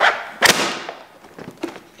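Plastic clamshell muffin container crackling as a paper label strip is peeled off it. There is one sharp loud crackle about half a second in, then a few lighter clicks.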